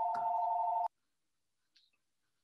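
Electronic telephone ring: a fluttering two-tone burst that cuts off suddenly about a second in.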